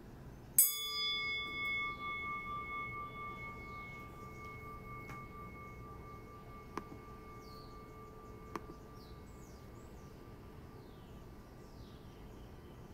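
A meditation bell struck once about half a second in, its ringing fading slowly over about ten seconds, several tones together, with the lower ones dying away first.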